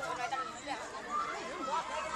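Several people talking and calling out at once: indistinct crowd chatter.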